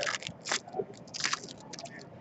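Foil trading-card pack wrappers crinkling and crackling as packs are handled and opened, in several short crunchy bursts.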